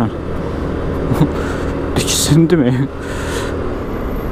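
Suzuki Burgman Street 125 scooter's single-cylinder engine running steadily under way, with two short bursts of hiss about two and three seconds in.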